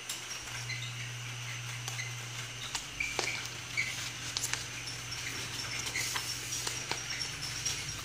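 Sheets of paper handled and turned over: faint rustling with small scattered crinkles and clicks.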